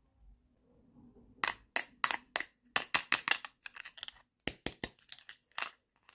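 Small hard plastic toy dishes clicking and clacking as they are handled and set down. It is an irregular run of sharp clicks, some in quick clusters, starting about a second and a half in.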